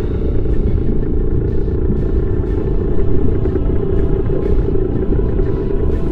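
Steady, deep underwater rumble of a submarine's engine sound effect, with soundtrack music underneath.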